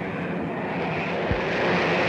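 Propeller-driven bomber engines droning steadily, with a single short low thump about a second and a quarter in.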